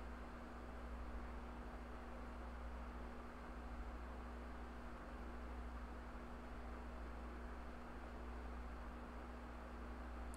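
Faint room tone: a steady low hum under a soft, even hiss, with nothing else happening.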